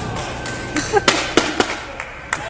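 Skateboard rolling, with a quick run of four or five sharp clacks past the middle.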